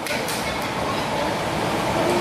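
Steady rushing background noise of a large hall, with no clear voice in it.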